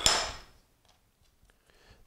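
A single sharp knock as a plastic rolling pin is set down on the cutting board, with a short bright ringing tail. Then it is nearly quiet, with a few faint handling ticks.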